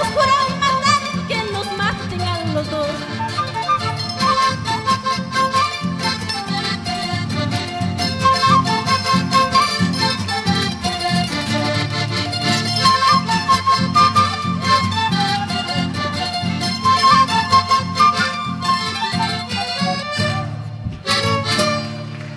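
Peruvian huayno played live by a band of accordion, violin, harp, mandolin, saxophone and guitar: an instrumental passage with the melody carried over a steady dance rhythm.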